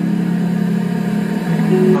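Background music: sustained low chords that shift to new notes about one and a half seconds in, with a voice singing "I love" at the very end.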